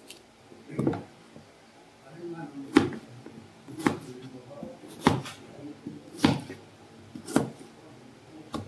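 Kitchen knife slicing through a firm green mango and knocking on a plastic cutting board: six crisp cuts, roughly one a second.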